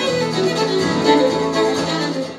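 Fiddle and autoharp playing a folk tune together, the bowed fiddle melody over the autoharp's strummed chords.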